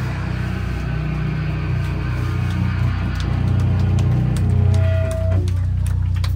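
Live band's electric guitar and bass holding one loud, low chord that rings on steadily, with the drums no longer playing. A short higher tone sounds about five seconds in, and a few sharp ticks come near the end.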